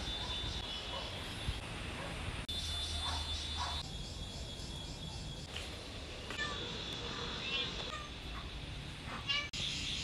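Short animal calls, heard several times over a steady background hiss.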